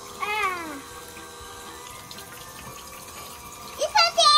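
Water running steadily through a toy somen-noodle slider, with a faint steady hum from its small water pump. About a quarter second in, a short high cry slides down in pitch, and another cry begins at the very end.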